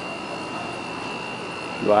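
Steady background noise with a faint, high, steady tone running through it, even in level and without any strokes or breaks.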